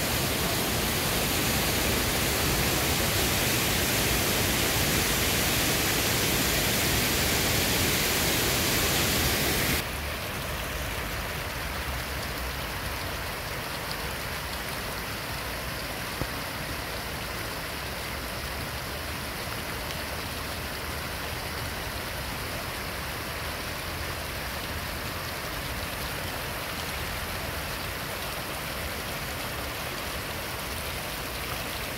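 Steady rush of a fast, turbulent mountain river, loud for about the first ten seconds, then an abrupt change to the quieter, steady flow of a small stream cascading over rocks.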